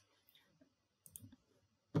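A few faint computer mouse clicks, the clearest about a second in.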